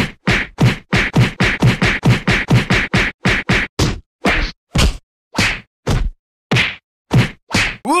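A rapid flurry of punch and hit sound effects from a staged fight, about four blows a second, slowing to about two a second halfway through.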